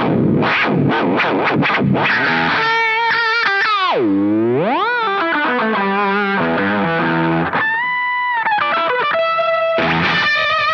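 Distorted electric guitar played through a JAM Pedals Delay Llama Xtreme analog delay, with the delay time swept by an expression pedal so the echoes bend in pitch. There are fast notes at first, then a deep swoop down and back up about four seconds in, then steadier held notes.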